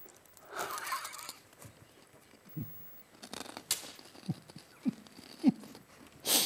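Men laughing quietly: breathy, wheezy laughter with short squeaky catches of the voice about every half second in the second half.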